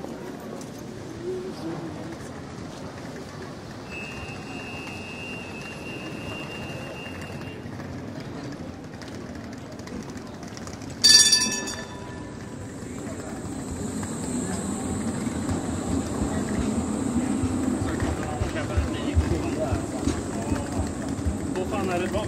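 Busy city street ambience: passers-by talking and a tram on the tracks alongside, its rumbling running noise and a steady high whine swelling through the second half. A single loud bell ding, a little past halfway, is the loudest sound.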